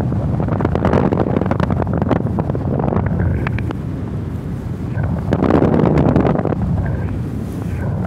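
Airflow rushing and buffeting over the camera microphone of a paraglider in flight, with quick flutters throughout and a stronger gust about five and a half seconds in.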